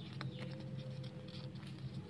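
Origami paper being creased and folded by hand, with scattered soft crackles and rustles, over a low steady hum.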